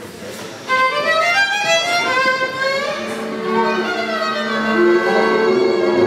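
Solo violin opening with a free, sliding melody, the last of the applause dying away as it begins. About three seconds in, the band enters with sustained accompanying notes beneath it.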